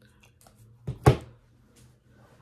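A tarot card snapped down onto a table, a sharp slap in two quick strokes about a second in, with faint card rustling before it.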